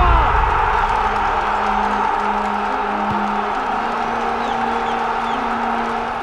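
Large football stadium crowd cheering a goal. The cheer surges at the start and holds as a steady roar, with a low held music tone running underneath that shifts up in pitch about halfway through.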